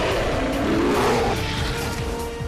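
An animal roar, swelling and rising in pitch toward the middle, over dramatic music; a held music note comes in about halfway.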